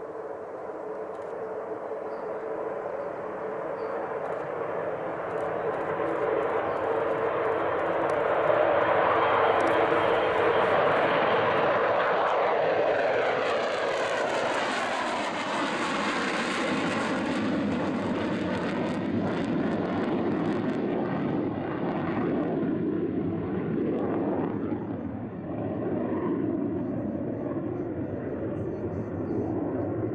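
Tupolev Tu-134A-3 jet airliner's two Soloviev D-30 turbofans at takeoff power as it rolls and climbs out. The engine noise builds to its loudest about ten seconds in, then sweeps in pitch as the jet passes and carries on as a lower rumble as it climbs away.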